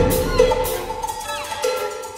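Contemporary violin concerto music. A loud, full orchestral passage drops away at the start into sparse held notes, crossed by short downward-sliding notes.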